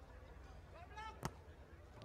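A single sharp slap of a hand striking a beach volleyball, about a second and a quarter in, over a faint background with a distant voice just before it.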